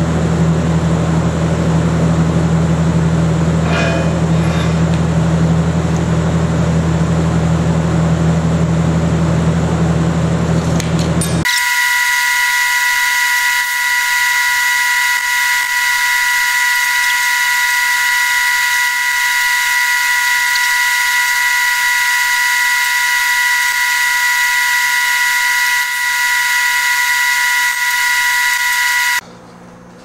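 Steady mechanical drone: a low hum for about eleven seconds that switches abruptly to a steady high-pitched whine of several fixed tones over a hiss, which cuts off just before the end.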